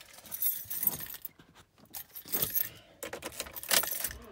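A bunch of keys jingling at a pickup truck's ignition switch, in several short jangles a second or so apart.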